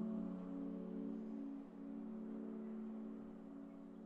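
Soft background music of held, sustained notes, slowly fading away.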